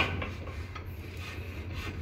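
Hand-lever rack-and-pinion arbor press forcing a keyway cutter through a coupling's bore: a sharp click at the start, then a steady scraping rub of metal being cut as the lever is pulled down.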